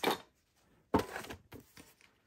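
A spiral-bound sketch pad set down onto a tray: one sharp knock about a second in, then a short sliding scrape and a few light taps.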